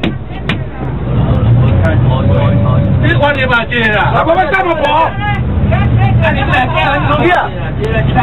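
Several people inside a tour bus talking and calling out over each other, loudest from about three seconds in, over the steady low rumble of the bus's engine.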